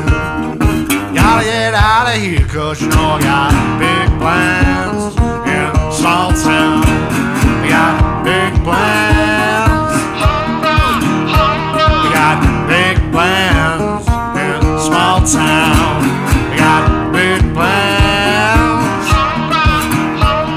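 Blues-rock instrumental break: a lead guitar plays bending, wavering notes over a steady drum beat.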